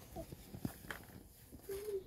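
Quiet room with brief speech: a short word near the start and a murmured "mm-hmm" near the end, with two small taps a little before one second in.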